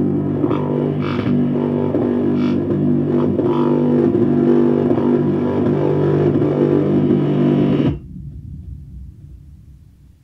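Background music of sustained, distorted guitar and bass chords that cuts off sharply about eight seconds in, leaving a low rumble that fades away.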